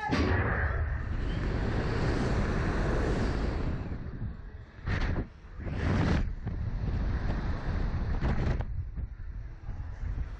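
Wind buffeting the microphone of a Slingshot reverse-bungee ride's onboard camera as the capsule is flung into the air: a rushing noise that starts suddenly with the launch, dips about four to five seconds in, and swells again with a few louder rushes around five, six and eight and a half seconds in.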